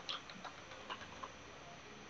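Computer keyboard being typed on: a handful of light, irregular key clicks in the first second and a half, over faint room hiss.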